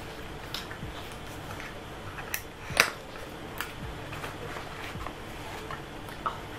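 A small cardboard product box being opened by hand: scattered light clicks and rustles of its flaps and insert as the bottle inside is taken out, with the sharpest snap about halfway through.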